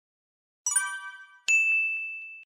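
Two bright electronic dings from a subscribe-button sound effect: the first about two-thirds of a second in, the second about a second and a half in, leaving one high tone ringing.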